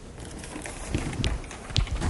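Soft footsteps on a hard floor, low thumps about every half second, with a few light clicks in between.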